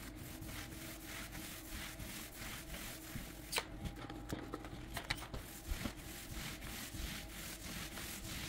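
Paint roller on an extension pole spreading wet floor finish across a hardwood floor in repeated back-and-forth strokes, with a couple of sharp clicks around the middle.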